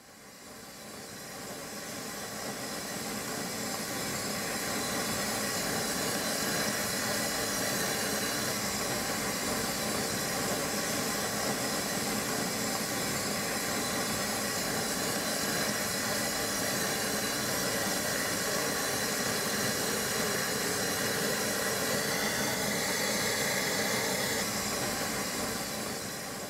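A gas flame hissing steadily, fading in over the first few seconds and then holding even.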